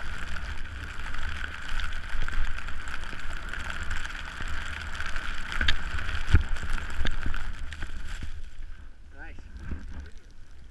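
Wind buffeting a helmet-mounted action camera's microphone, with the hiss of skis running through deep powder snow and a thump about six seconds in. The noise falls away near the end as the skier slows to a stop.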